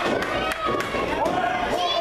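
Several spectators' voices shouting and chattering over one another, with a few sharp knocks scattered through.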